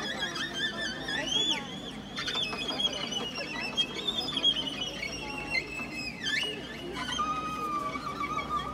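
Live folk instrumental ensemble of violin, cimbalom, accordion, drum kit and electric guitar playing, the violin carrying a high melody with slides up and down.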